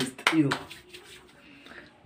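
A man's short vocal sound with a light click near the start, then low room noise.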